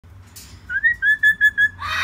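Moluccan cockatoo whistling five short, even notes in about a second, then breaking into a louder, harsher call near the end.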